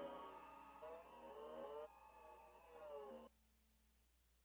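Near silence: the faint, fading tail of the song's last notes, a few tones gliding up and down, which cuts off abruptly a little after three seconds in.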